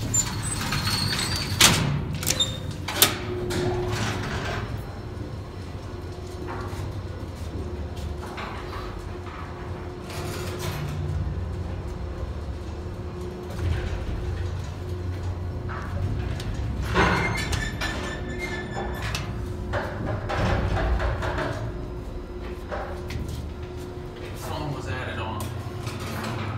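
1965 Otis traction elevator in operation, heard from inside the car: door sliding and knocking shut about two seconds in, then a steady low hum as the car runs, with another burst of door or car movement about two-thirds of the way through.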